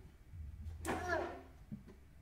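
A young child's brief wordless vocalization about a second in, falling in pitch, over a low steady hum.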